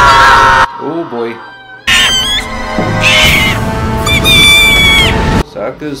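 Cartoon soundtrack with high-pitched screams of 'Aah!' over dramatic music. The sound dips about a second in, then comes back loud with long held screams. A man's speaking voice takes over near the end.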